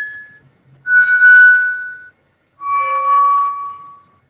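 Electronic tones, each about a second long and held steady, stepping down in pitch: one fading away at the start, then two more, each lower than the last.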